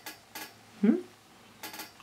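Light clinks of a bag handle's metal ring being handled: a couple near the start and a quick cluster near the end. A short hummed "mm?" comes about a second in.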